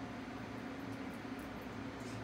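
Steady low mechanical hum with a faint even hiss: the room tone of a running fan or household appliance.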